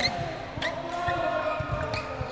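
A basketball bouncing on a sports-hall floor, several dull thumps at uneven intervals, with voices in the background.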